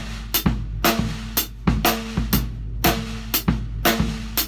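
Drum kit playing a steady rock groove: hi-hat in quarter notes, snare backbeat on two and four, and bass drum strokes placed on the partials of eighth-note triplets. This is a triplet-grid exercise played with each partial twice. The bigger strikes ring on briefly.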